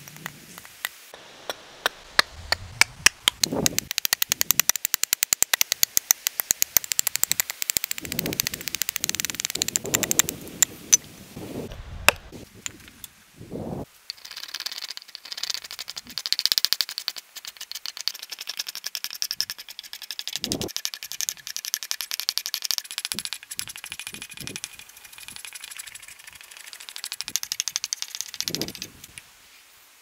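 Hand tools working a wooden hammer handle. For about ten seconds an axe hews the stick on a chopping block in a fast run of sharp knocks with a few heavier thuds. Then comes a longer stretch of high scraping as wood is shaved, broken by scattered knocks.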